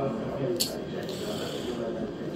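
Fishin' Frenzy fruit machine's electronic game sounds as an autoplay spin starts, with a brief sharp high sound about half a second in.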